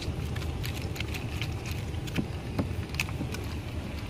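A steady low rumble with scattered light clicks and taps through it.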